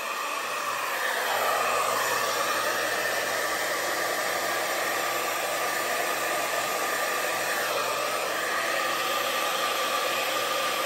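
Handheld hair dryer running steadily, a rush of air with a faint motor whine, blowing wet fluid acrylic paint outward across a canvas.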